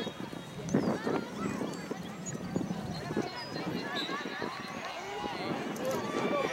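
Several voices from around a soccer field calling out and talking at once, overlapping and at a distance, with no single voice standing out.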